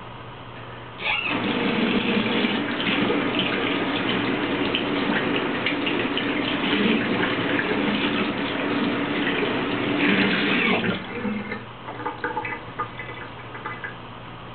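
Water tap running into a sink, turned on about a second in and shut off abruptly about ten seconds later, while the face is rinsed under it. A few scattered small clicks and splashes follow near the end.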